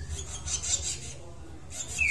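Soft, irregular rubbing and scratching as fingers work an opened gelatin capsule, sprinkling its powder onto ant eggs in a plastic feeding cup.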